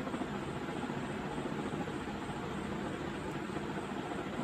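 Steady low background hum and hiss with no distinct events.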